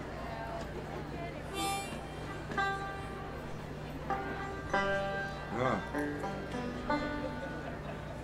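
Harmonica playing a few sparse, separate held notes, one of them bent with a waver about halfway through, over a steady low hum.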